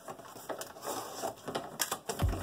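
Small cardboard box being opened by hand: packing tape pulled off and cardboard flaps torn open, giving irregular crackling and sharp snaps.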